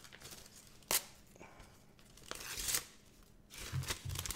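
Paper envelope being torn open by hand: a sharp tap about a second in, then a short rustling tear of paper near the end.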